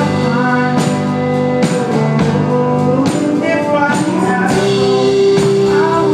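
Live band playing an instrumental passage: strummed acoustic guitar and mandolin with keyboard over a steady beat.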